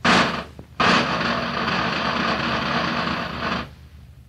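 Military side drum struck with two sticks: one short stroke, then about a second in a sustained drum roll of nearly three seconds that cuts off sharply.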